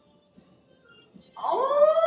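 A woman's excited squeal: near quiet at first, then, about one and a half seconds in, one long high cry that rises in pitch and then holds.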